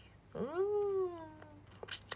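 A single drawn-out vocal call, about a second long, that swoops up sharply and then slides slowly down in pitch.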